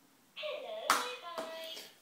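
A baby slapping and pressing the top of a plastic electronic activity table: two sharp slaps about half a second apart. The toy sounds its electronic tones and voice for about a second and a half before stopping.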